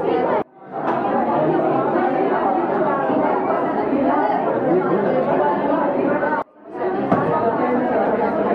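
Many voices talking at once in a hall: students and adults in overlapping chatter, with no single speaker standing out. The chatter drops out suddenly twice, about half a second in and again after about six and a half seconds.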